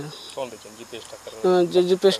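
Faint, steady high chirring of insects behind a man's voice. The voice drops to a lull and then resumes strongly about one and a half seconds in.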